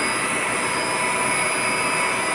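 Reverse osmosis water plant running: a steady machine drone from its pumps and motors, with a few constant high-pitched whining tones over it.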